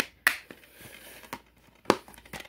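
Plastic DVD keep-case handled: a disc pressed onto the centre hub and the case snapped shut, giving a few sharp plastic clicks, the loudest near the end.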